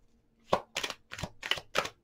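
A tarot deck being hand-shuffled: cards snapping against each other in a quick run of sharp clicks, about four a second, beginning about half a second in.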